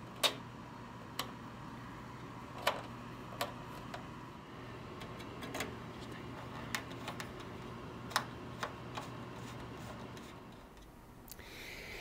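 Scattered light metallic clicks of a small hand screwdriver turning stainless steel screws into an aluminium door sill plate, over a faint steady hum.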